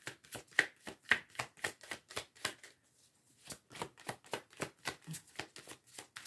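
A deck of oracle cards being shuffled by hand: a quick, even run of soft card slaps, about four or five a second, with a short break a little before halfway.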